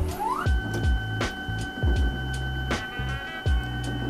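Elegoo Mercury wash station's motor starting a wash cycle: a whine that rises over about half a second, then holds steady. Background music with a steady beat plays alongside.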